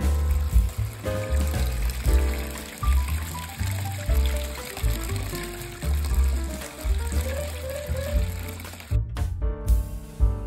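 Background music with a steady bass line, over wort splashing from a transfer tube through a mesh strainer into a plastic fermenter bucket; the splashing stops abruptly about nine seconds in.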